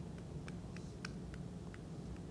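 Fingertip taps on the built-in microphone of a Rode Wireless GO transmitter: faint, short clicks at about four a second, over a low steady hum.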